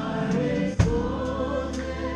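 Live worship band music with a group singing over held chords. A single loud drum hit lands a little under a second in.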